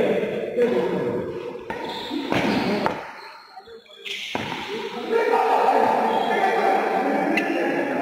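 Indistinct voices echoing in a large indoor hall, with a couple of sharp racket hits on a shuttlecock between two and three seconds in. The sound drops away suddenly for about a second just after the hits.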